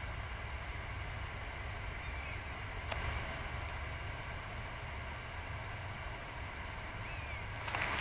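Steady open-air background noise with a low rumble, a single sharp click about three seconds in, and footsteps on a path starting just before the end.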